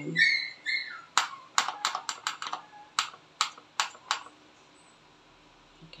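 A dog's short high whine, then about a dozen sharp clicks and taps over some three seconds as a pouch of freeze-dried beef dog food is shaken and tapped out over a ceramic bowl.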